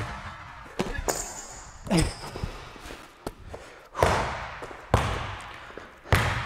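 A basketball bouncing on a hardwood gym floor: about six separate, unevenly spaced bounces, each ringing on in the echo of the large gym.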